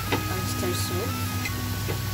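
Background music of held, steadily changing notes over a low hum and a faint hiss, with two sharp clicks right at the start and another near the end.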